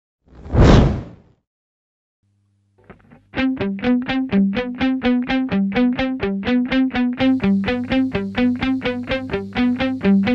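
A swoosh sound effect in the first second, then, after a short pause, news background music starts about three seconds in: fast, evenly repeated plucked guitar-like notes over a steady bass.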